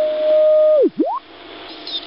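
A carrier's heterodyne whistle in the OzQRP MDT 7 MHz direct-conversion receiver as its tuning knob is turned. The single steady tone swoops down through zero beat about a second in and climbs back up, then gives way to quieter band hiss.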